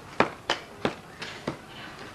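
A series of sharp knocks or taps, five in quick succession about three a second.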